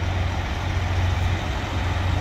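Diesel engines of parked semi trucks idling: a steady low rumble.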